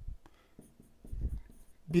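Pen strokes of handwriting on a stylus tablet, faint and scratchy, with a dull low thud about a second in.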